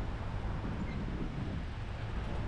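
Low, steady wind rumble on a bike-mounted camera's microphone, mixed with the running of cars queued in traffic alongside.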